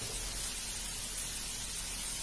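A steady, even hiss of vegetables cooking in a sauté pan on a gas stovetop.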